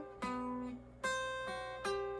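Epiphone hollow-body electric guitar played with a clean tone: three picked notes and chords, each left to ring out and fade before the next.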